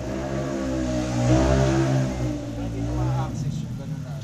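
A motor vehicle engine revving up and easing back down over about three seconds, loudest in the middle.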